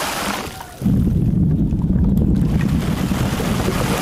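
ASMR rain made by spraying water onto a microphone: a fine hiss that breaks off about half a second in. Under a second in, a sudden loud low rumble starts and carries on, and the spray's hiss rises again near the end.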